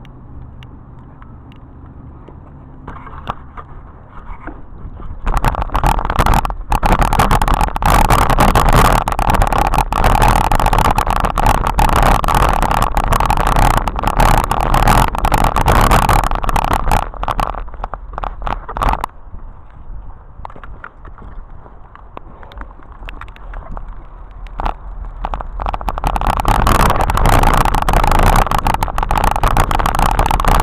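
Wind rushing over a handlebar-mounted action camera and a BMX bike's tyres rolling over a dirt track, full of rattles and knocks from the bike. It starts about five seconds in, eases for a few seconds past the middle, and picks up again near the end.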